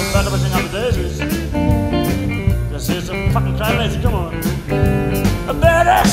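Live blues-rock band playing an instrumental passage: bass and drums under an electric guitar lead whose notes bend up and down.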